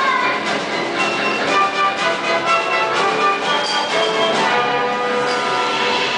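Orchestral theatre music with bell-like notes ringing out one after another over sustained instruments.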